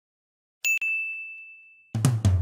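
A bright, bell-like ding sound effect about half a second in, struck twice in quick succession, its single high tone ringing and fading away over about a second. A drum-kit music track starts right at the end.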